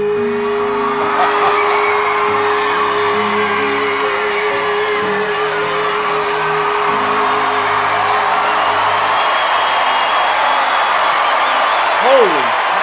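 A male singer holds one long, steady note over sustained orchestral backing chords, with a live audience cheering and whooping throughout; the held note fades out a little past halfway.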